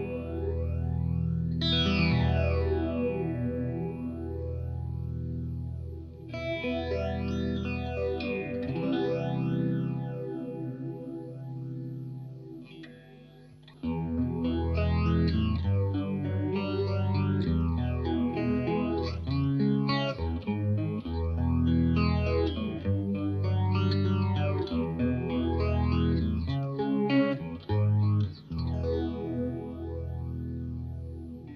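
Electric guitar (Fender Stratocaster) played through a Boss PH-2 Super Phaser with its resonance control turned up, which feeds part of the signal back into itself for a more pronounced phaser sound. Ringing notes near the start carry a strong sweep rising and falling through the sound, followed by strummed chords with the sweep moving up and down.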